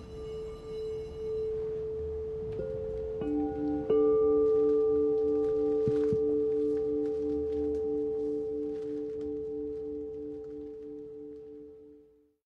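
Quartz crystal singing bowls struck with a mallet, ringing in long sustained tones. Fresh bowls are struck at about two and a half, three and four seconds in, the last the loudest, and a lower tone throbs in a slow, even wobble. The tones then slowly die away and cut off just at the end.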